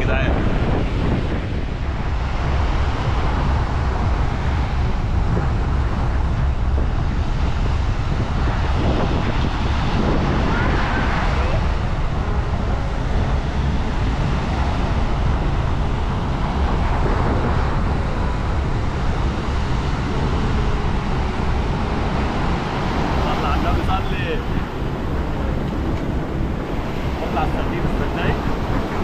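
Wind buffeting the microphone in a steady low rumble over the wash of surf breaking on a sandy shore.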